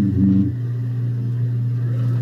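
A steady low hum on the video-call line, with a short voice sound in the first half second.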